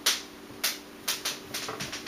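Faint rustling and a few light clicks of plastic Lego pieces being handled, over a low steady hum.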